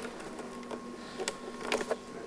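A steady low hum with a fainter higher tone under it, broken by a few sharp clicks and taps, the strongest about a second and a half in.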